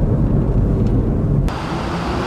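Road and engine noise inside a moving car, a low rumble. About a second and a half in it cuts off suddenly to a brighter, steady hiss.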